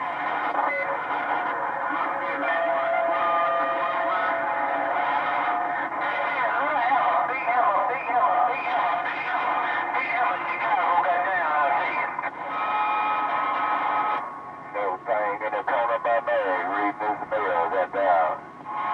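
Ranger HR2510 radio's speaker receiving incoming transmissions: several overlapping, garbled voices with steady whistling tones over them. The signal turns choppy and breaks up near the end.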